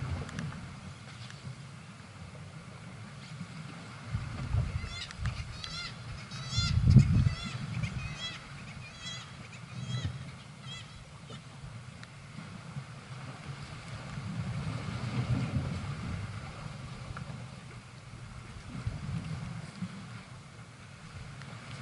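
Wind buffeting the microphone in gusts, with a bird giving a run of short calls, about two a second, from about five to eleven seconds in.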